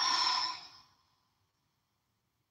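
A woman's breathy sigh, an exhale that fades out within about a second.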